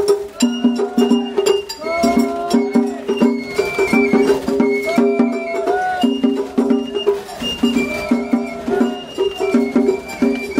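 Matsuri-bayashi festival music played on a float: a high bamboo flute melody with sliding notes over a steady, busy beat of taiko drums.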